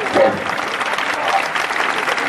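Audience applauding, with one short vocal cry just after it begins.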